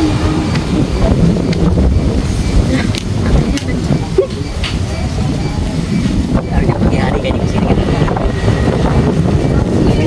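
Strong wind buffeting the microphone: a heavy, uneven low rumble with no steady pitch.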